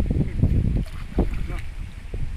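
Shallow stream water splashing and sloshing as people wade and scoop with their hands in the streambed, in uneven bursts, with wind rumbling on the microphone.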